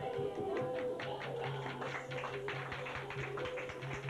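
Kathak dance accompaniment played back from a tape recording: rapid drum strokes over a steady, held melodic line.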